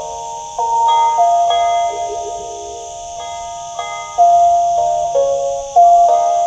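Phin pia, the northern Thai chest-resonated stick zither, playing a slow melody of plucked, bell-like ringing notes that sustain and overlap as new ones start.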